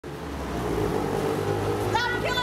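A car running along the street next to the sidewalk, a steady engine and tyre rumble that grows louder over the first second.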